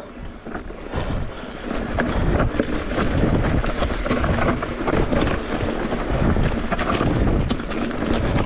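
Mondraker Crafty R electric mountain bike rolling down a rough forest singletrack: tyres grinding over dirt and stones, with many small rattles and knocks from the bike. Wind buffets the camera microphone, and the noise grows louder about a second in as the bike picks up speed.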